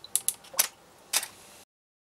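A quick run of four sharp mechanical clicks within about a second and a half: the water-drop rig firing a shot, its solenoid drop valve and the DSLR's shutter. The sound cuts off abruptly near the end.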